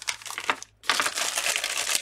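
Paper wrapping and packets crinkling and rustling as they are handled and felt by hand, the sound breaking off briefly just over half a second in.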